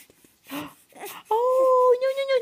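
Baby's cry: a couple of soft fussing sounds, then, just past the middle, a loud, steady wail that starts abruptly.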